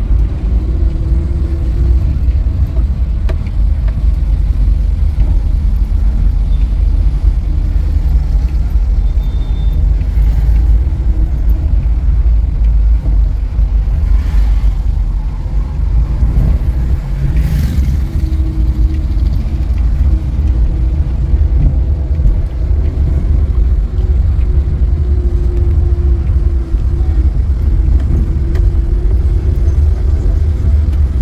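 Steady low rumble of a car driving slowly through town streets, with engine and road noise heard from inside the car. Two brief hissing swells come about halfway through.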